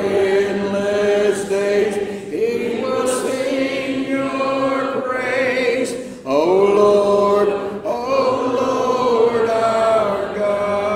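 Congregation singing a hymn a cappella, voices holding long notes in unison, with a short breath break about six seconds in before the next phrase.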